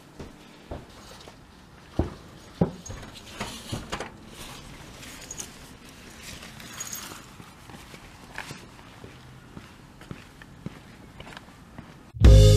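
Footsteps on hard paving, uneven steps and scuffs with a few sharper knocks, loudest about two seconds in and again just after, as people walk past close by.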